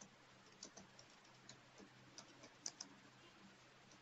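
Near silence: faint room tone with a low hum and a few soft, irregular clicks.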